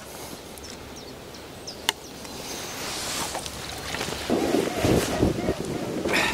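Low steady outdoor background with a single sharp click, then loud irregular rustling and knocking close to the microphone from about four seconds in, as if the camera or the person's clothing is being handled.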